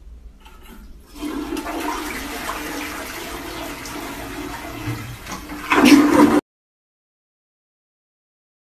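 Toilet flushing, set off by a cat pushing down the handle. Water rushes into the bowl from about a second in, grows louder near the end, and cuts off suddenly.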